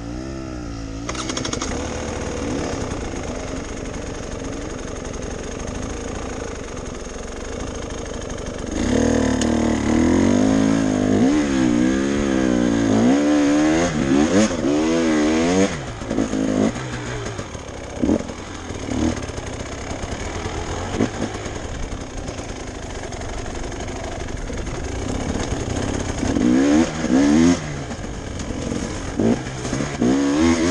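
Enduro motorcycle engine heard from on the bike, running under load on a rough dirt trail. The revs rise and fall as the throttle is worked, hardest for several seconds about a third of the way in and again near the end.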